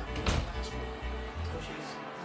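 Television football broadcast playing through a soundbar: music with a deep, steady bass that cuts off near the end, with a brief knock just after the start.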